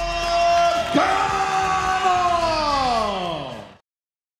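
A long drawn-out shout. It is held on one note, steps up slightly about a second in, then slides steadily down in pitch, and is cut off abruptly near the end.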